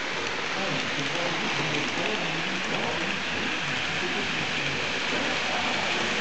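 Model electric freight train, a BB 16000 locomotive hauling a long rake of freight wagons, rolling along the layout's track: a steady rain-like rushing of small wheels on the rails. Voices murmur faintly behind it.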